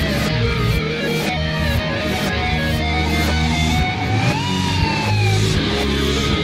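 Rock music played in reverse: electric guitar and bass over a steady beat, with no singing. A sliding note rises and then falls about four to five seconds in.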